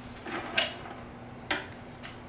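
Hand tools being picked up off a plastic toolbox lid: a short scrape about half a second in and a sharp clack about a second and a half in.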